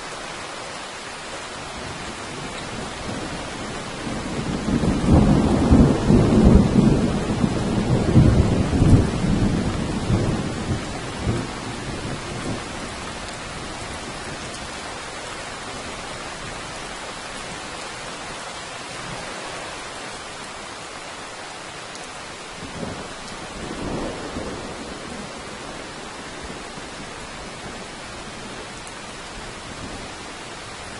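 Steady rain with a long roll of thunder that builds about four seconds in and dies away by about twelve seconds. A shorter, fainter rumble of thunder follows a little after twenty seconds.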